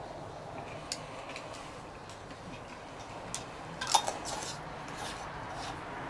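A spoon clicking against a container, a few sharp clicks with the loudest cluster and a short scrape about four seconds in.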